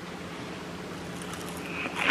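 Quiet room tone with a steady low hum, and faint crunching from a mouthful of fried, crumbed calamari being chewed in the second half.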